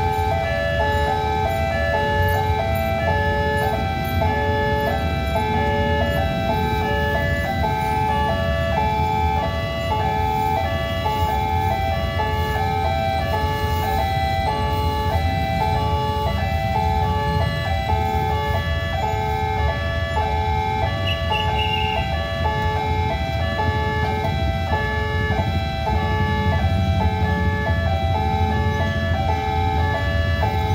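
Level-crossing warning alarm ringing continuously as an electronic chime that alternates between two tones in an even repeating rhythm, which signals that the barriers are down for an approaching train. Under it is the steady low rumble of traffic idling and waiting at the crossing.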